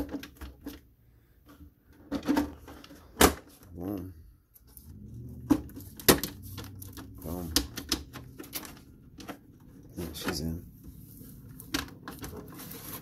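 Clicks, taps and knocks of a hard plastic RC truck body being handled, coming irregularly, with a few brief murmured voice sounds in between.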